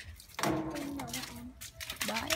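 A person's voice: one short utterance starting about half a second in and lasting about a second, with a few sharp clicks around it.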